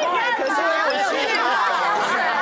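Speech only: people talking, their voices overlapping.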